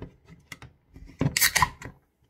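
Aluminium beer can being opened by its ring pull: a few small clicks of fingers on the tab, then, just over a second in, the loud crack and hiss of the can venting.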